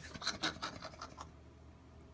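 Faint scratchy rustling: a quick run of soft scrapes that dies away after about a second.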